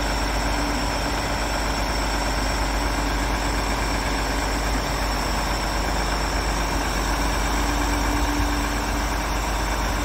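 Volvo FH truck's diesel engine running at a steady idle while driving the hydraulics of its knuckle-boom crane as the boom unfolds, with a steady high whine over the engine.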